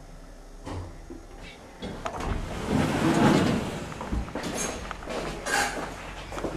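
Schindler 5300 MRL elevator's automatic sliding doors opening at the landing: a click a little under a second in, then the doors sliding for about two seconds, rising and fading, followed by a knock and a few lighter knocks.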